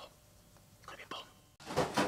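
Quiet at first, with a few faint soft sounds. About one and a half seconds in, it changes suddenly to loud clattering and rustling as objects are rummaged through and shoved about.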